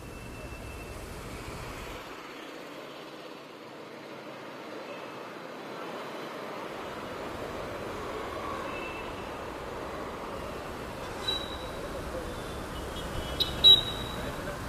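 Steady street traffic noise, with a brief sharp high-pitched sound near the end.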